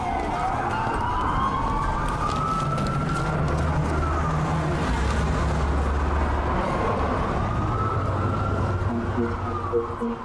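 Emergency vehicle siren wailing, its pitch rising and falling slowly, about one sweep every four seconds, over the low rumble of city street traffic.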